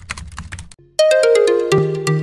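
Channel-intro sound effect: a quick run of clicks like typing, then about a second in a bright electronic jingle of ringing notes stepping down in pitch, with a low note coming in under them.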